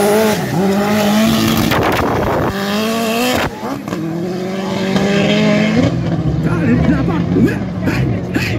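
Drag-racing car accelerating hard off the line and down the strip, its engine revving high with short breaks at gear changes about two and three and a half seconds in. The engine note fades out around six seconds in, and voices follow.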